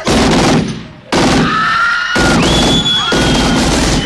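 Rapid gunfire from a drive-by shooting in a film soundtrack, in three bursts: a short one at the start, then a longer one just after a second in, then the longest. Thin high held tones run over the later bursts.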